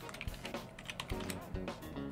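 Computer keyboard typing: a quick run of key clicks as a word is typed out, over soft background music.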